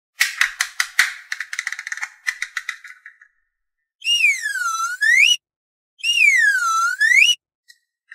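Rapid clicking and rattling of a plastic toy plane being folded into shape for about three seconds. Then come two swooping cartoon sound effects, each about a second and a half long, that dip in pitch and rise back up.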